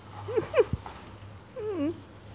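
Domestic cat meowing: two short, quick mews about half a second in, then a longer wavering meow that falls in pitch near the end.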